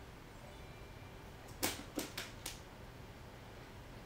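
A toucan splashing in a plastic tub of bath water: four quick splashes within about a second, the first the loudest.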